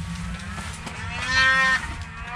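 Snowmobile engine passing, its whine swelling to a peak about a second and a half in, then fading with a slight drop in pitch.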